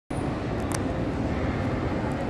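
Steady low din of a large indoor shopping-mall atrium, with a couple of faint clicks a little under a second in.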